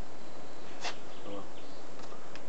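A sharp click a little before the middle, then a brief buzz from an insect flying close by, over a steady hiss.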